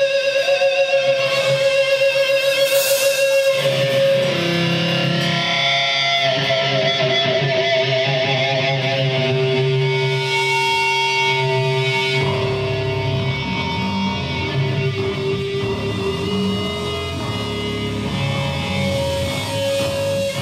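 Distorted electric guitars holding long, wavering notes with effects, without drums. A deep bass guitar comes in underneath about twelve seconds in.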